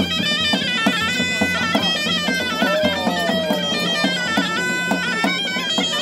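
A snake charmer's pipe plays a melody that jumps quickly from note to note, with steady drum beats under it.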